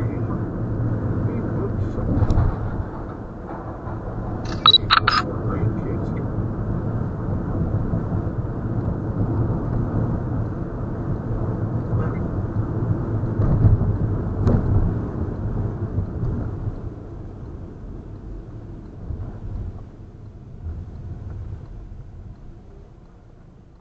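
Road noise inside a moving car, heard through a dashcam microphone: a steady low rumble of tyres and engine that eases over the last few seconds as the car slows. A brief sharp sound about five seconds in.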